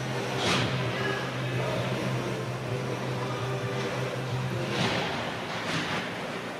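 Ice hockey rink sounds: a few brief hissing scrapes of skate blades on the ice over a steady low hum. The hum stops about five seconds in.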